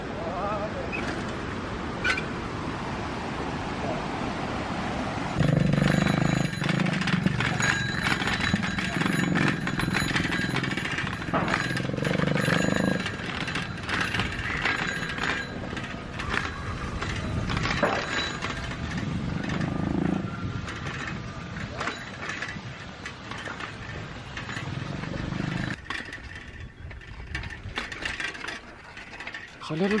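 Bicycles ridden over a rough dirt lane, rattling, with wind on the microphone. From about five seconds in until about twenty-six seconds, a louder voice comes and goes in held stretches over the riding.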